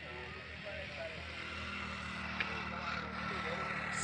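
Steady low engine hum in the background, with faint distant voices.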